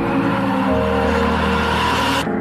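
Trailer soundtrack: sustained music tones under a loud rush of noise, with a deep bass note coming in under a second in.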